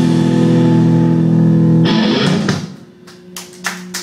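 Electric guitars and bass of a rock band holding one ringing chord, struck again about two seconds in, then dying away to a steady low amplifier hum with a few short sharp noises near the end.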